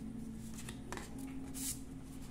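Matte oracle cards being handled: a few soft swishes of card sliding on card as one is set down on a pile and the next picked up, the clearest about a second and a half in.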